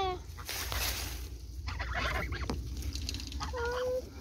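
Domestic goose calling: a falling call trails off at the start, and a held, level honk comes near the end. A brief rustle comes about half a second in.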